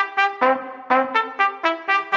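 Background music: a quick riff of short, clipped pitched notes, about four a second.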